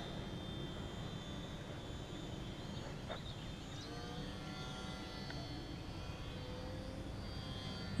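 The electric motor of a Hobbyzone Sport Cub S RC plane flying at a distance, heard as a faint thin whine over a steady low hiss. The whine comes through more clearly from about halfway through.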